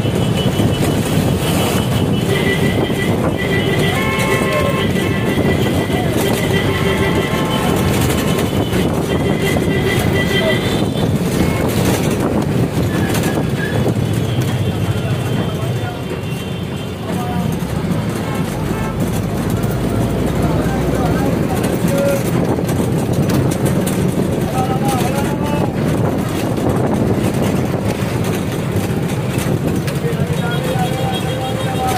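Busy city road traffic with a steady din and vehicle horns sounding on and off over the first ten seconds or so, with people's voices mixed in.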